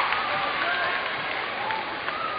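Concert audience applauding with scattered shouts from fans, the applause slowly dying down.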